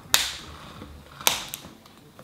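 Two sharp clicks of a clear plastic slime container being handled, about a second apart, with fainter ticks between, as fingernails pick at its seam trying to find the opening.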